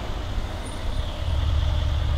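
Engine of a black Mercedes-Benz ML-class SUV running as it pulls in: a steady low rumble that grows slightly louder in the second half.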